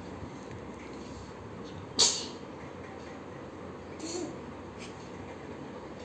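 Steady low room hiss, broken by one sharp impact about two seconds in, the loudest sound here, and a brief soft vocal sound about four seconds in.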